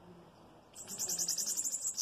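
Bananaquit singing while held at a person's mouth: a rapid run of high, quickly repeated notes that starts a little under a second in.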